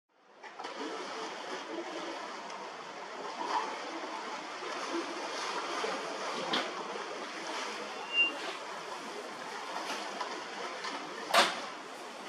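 Steady rush of open sea water and wind heard from a ship's deck above the waves, fading in at the start. A few sudden knocks break through, the loudest near the end, and there is one brief high peep about two thirds of the way in.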